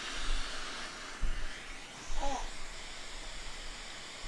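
White noise played from a phone speaker: a steady, even hiss that sets in at the start, meant to lull a sleepy baby. A short, soft voice sound comes about two seconds in.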